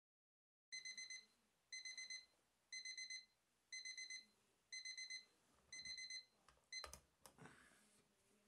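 Alarm clock beeping: quick bursts of about four high electronic beeps, one burst a second, six times over, then cut off partway through the seventh burst, followed by a couple of sharp knocks.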